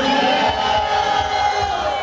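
A long, drawn-out shout over a PA system, gliding up at the start and then held steady for about two seconds, as the punchline of a pick-up line. Background music with a steady beat runs under it.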